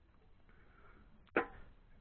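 Quiet workshop room tone with a single short, sharp knock a little past halfway through.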